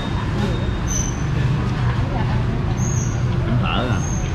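Steady low rumble of street traffic, with people talking in the background.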